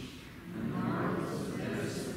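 A man's voice speaking a prayer aloud in a slow, drawn-out way, echoing in the church, after a brief pause at the start.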